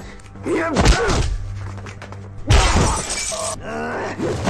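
Fight-scene sound effects over a low music score: effort grunts and a heavy thud about a second in, then glass shattering in a loud crash just past halfway.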